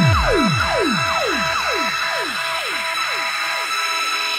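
Electronic dance music from a live DJ set: a run of falling synth sweeps, about two a second, grows fainter over a sustained high tone, and the bass drops away near the end.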